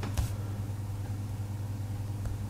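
A steady low hum, with one brief click just after the start.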